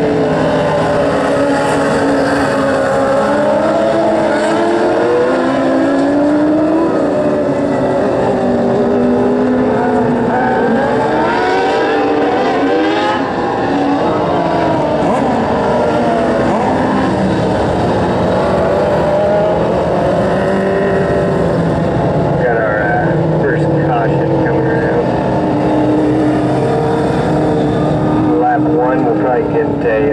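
A field of dwarf race cars running at racing speed on a dirt oval. Several small motorcycle-derived engines overlap, their pitches rising and falling as they accelerate and lift.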